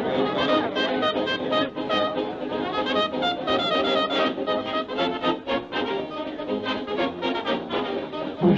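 Early-1930s cartoon soundtrack band playing a lively instrumental tune with brass to the fore, on a quick, steady beat.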